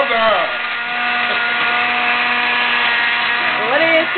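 Countertop blender running at a steady pitch, blending a green kale and frozen-fruit smoothie.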